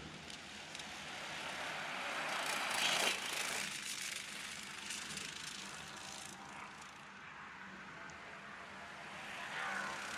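Racing go-karts' small engines running at a distance, swelling as the karts pass about three seconds in, then fading and growing again near the end.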